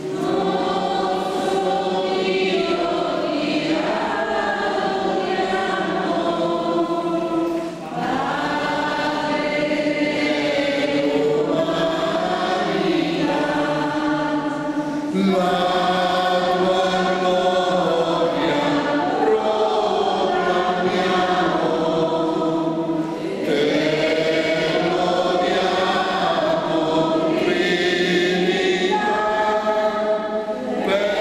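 Group of voices singing a slow hymn in long held phrases of about seven or eight seconds, with short breaks between them: the entrance hymn as the priests go to the altar to begin Mass.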